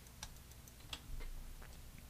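A few faint, scattered clicks of a computer mouse and keyboard, about four in two seconds, as lines are picked and trimmed in CAD software.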